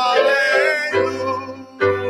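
A man singing a gliding, drawn-out note, with sustained accompaniment chords coming in about a second in and struck again near the end.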